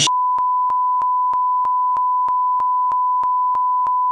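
Censor bleep: a single steady high-pitched beep tone held for about four seconds, laid over and replacing spoken swearing, with faint clicks about three times a second.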